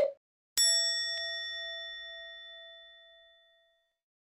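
A short hit ends right at the start. About half a second in, a single struck bell sound effect rings out with a clear, steady tone and dies away over about three seconds.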